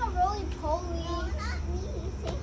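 Other people's high-pitched voices talking and calling out, the words not intelligible, over a steady low rumble.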